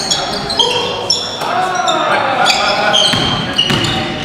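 Basketball game on a hardwood gym floor: many short, high sneaker squeaks, a basketball bouncing, and players' voices calling out around the middle, all echoing in a large hall.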